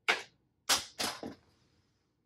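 Three short, sharp clacks of a hard object knocking against a shelf, the first right at the start and two close together just under a second in.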